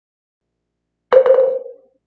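A single struck note about a second in: a sharp attack that rings at one mid pitch and dies away within about a second.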